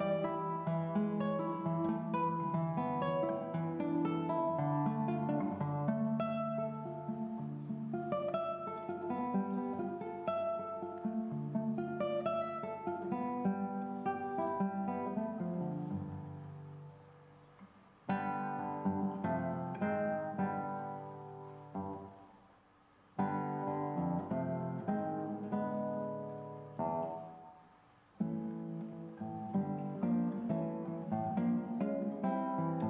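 Solo nylon-string classical guitar playing a concert piece of plucked melody and chords. Three times, in the second half, the playing pauses and the last notes ring out and fade before the next phrase starts sharply.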